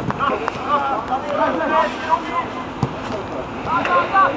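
Football players shouting and calling to each other across the pitch, short overlapping calls throughout, with wind rumbling on the microphone and an occasional thud of the ball being kicked.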